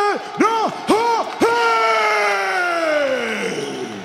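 Ring announcer's amplified voice calling out a fighter's name in drawn-out style: long held vowels, two short syllables, then one long final call that slides slowly down in pitch. Crowd noise lies faintly underneath.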